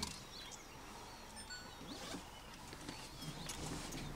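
Wild birds calling: scattered short chirps and whistles, some briefly held on one note, over a quiet outdoor background.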